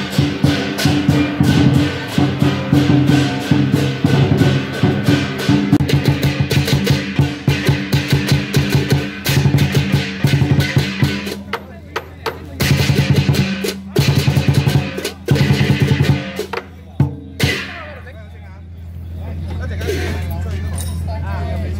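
Lion dance percussion: a big drum beaten fast with crashing cymbals, a dense driving rhythm that breaks off briefly, resumes and stops about three seconds before the end. A steady low hum remains after it.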